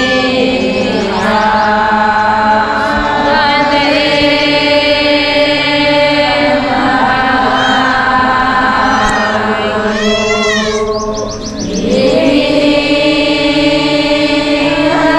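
A large group of women chanting a devotional prayer song in unison, holding long drawn-out notes. Their voices dip briefly about eleven and a half seconds in, then the next line begins.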